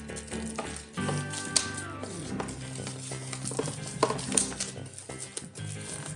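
Clear plastic shrink wrap crinkling and crackling as it is peeled off a folded cardboard game board, with many small crackles throughout.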